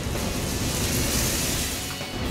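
Cream poured into a sauté pan of hot browned butter and mushrooms, sizzling steadily, with music underneath.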